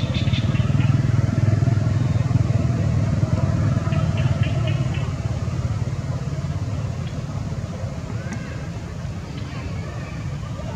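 Low engine rumble of a motor vehicle, growing louder over the first second or so and then slowly fading away, as if passing by, with a few short high chirps about four seconds in.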